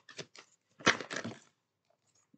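A deck of tarot cards being shuffled by hand: a few short rasps of cards sliding over one another, then a louder, longer rasp about a second in.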